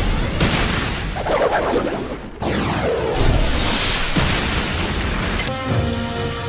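Animated-battle explosion sound effects: a sudden heavy boom as the blow lands, rumbling on with swirling sweeps, then a second blast about two and a half seconds in. Steady music notes come back in near the end.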